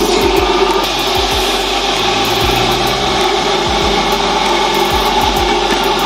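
Electric coconut grater running steadily, its spinning serrated blade shredding coconut flesh from a half shell held against it by hand: a continuous whirring, grinding scrape.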